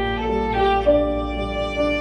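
Violin playing a bowed melody with piano accompaniment, the notes changing every half second or so.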